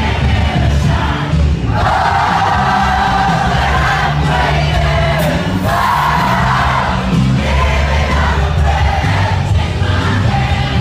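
Loud dance music with a heavy bass line played through a DJ's PA sound system, with a crowd singing along.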